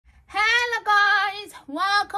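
A woman singing a short, high-pitched phrase of three held notes with vibrato, the last one rising.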